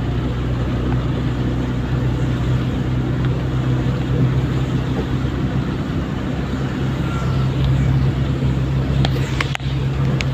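Engine and road noise heard from inside a moving vehicle on a wet road: a steady low drone under an even hiss. There are a few sharp clicks near the end.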